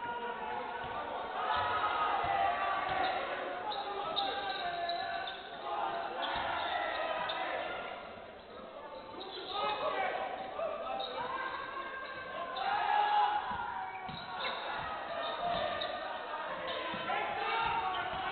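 A basketball being dribbled on a hardwood court during live play, with players' and coaches' voices calling out over it in a large sports hall.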